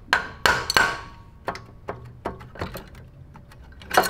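Sharp metal knocks and taps on the cylinder head of a 196cc Honda-clone engine as the head is worked loose from the cylinder. There are several hard strikes with a short ring in the first second, then lighter knocks every half second or so.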